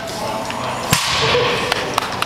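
A 355-pound loaded barbell is set down after a deadlift and lands on the rubber-matted platform with one sharp clank about a second in, followed by a couple of lighter clicks.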